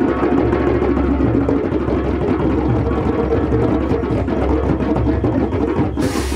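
Music playing at a steady level, with a repeating bass line under busy mid-range instruments.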